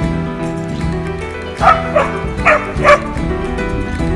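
English springer spaniel barking three times, once at about a second and a half in and twice close together near three seconds, over steady background music.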